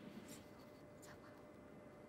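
Near silence: a faint steady hiss with a thin steady tone, and a couple of faint ticks in the first second.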